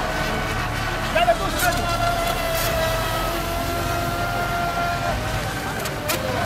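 Electric RC racing boat's motor whining at one steady high pitch as the boat runs at speed, with a short upward blip about a second in; the whine stops about five seconds in.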